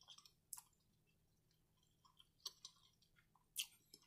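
Faint mouth clicks and soft chewing sounds of a person eating with their mouth closed: a handful of short clicks scattered across a few seconds, otherwise near silence.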